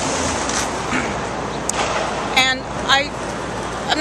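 Steady city street traffic noise, with a couple of brief voice sounds about two and a half and three seconds in.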